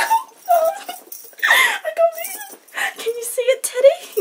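A young woman squealing and giggling in short, wavering high-pitched bursts with breathy gasps between, giddy with delight.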